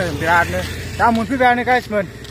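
A man's voice speaking to the camera in short, rising and falling phrases, over a steady low hum.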